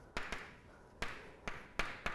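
Chalk on a blackboard while a word is written: about five short, sharp taps and strokes, fairly faint.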